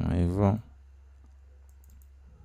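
A brief, wavering voice sound in the first half second, then near-quiet with a steady low electrical hum and a couple of faint computer mouse clicks near the end.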